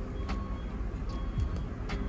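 Soft lo-fi hip hop background music, with a few faint clicks of a photocard being handled in a plastic sleeve.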